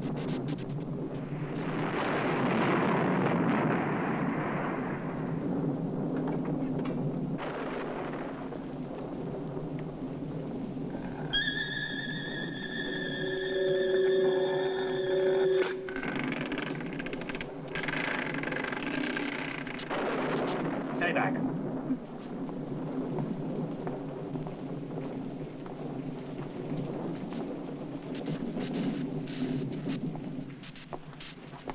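Film soundtrack of background score and sound effects, with a steady, held chord-like tone for about four seconds in the middle.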